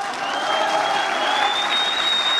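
Audience applauding, a dense even clatter of clapping, with a thin high whistle held for about two seconds over it.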